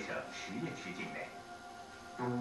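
Mandarin documentary narration over soft background music.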